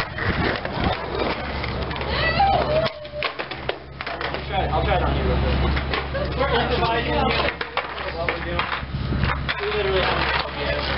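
Skateboards clacking and knocking in sharp wooden impacts as tricks are tried, mixed with people's voices talking and a steady low hum underneath.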